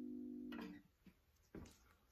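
The last chord of an acoustic guitar ringing out, then stopped abruptly about half a second in as the strings are damped by hand. A faint click and a brief soft thump follow, with little else after.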